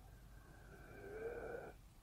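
A faint breath drawn in through the nose, with a slight whistle in it, swelling over about a second and a half and stopping shortly before the end.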